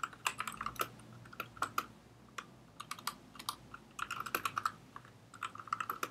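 Computer keyboard being typed on: quick clusters of keystrokes with short pauses between them.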